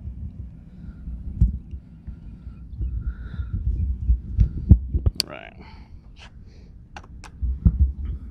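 Low rumbling and knocking from handling of a handheld camera as it is carried around, with several sharp clicks scattered through.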